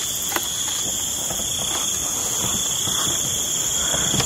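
Night insects, crickets, in a steady chorus: a continuous high-pitched ring at two pitches, with a faint click about half a second in.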